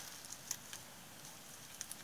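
Faint handling sounds of paper: a few soft ticks and light rustles as fingers press and adjust a glued paper embellishment onto a card.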